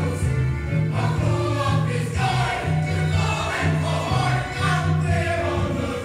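Music for the dance routine: a choir singing over a low, pulsing bass line.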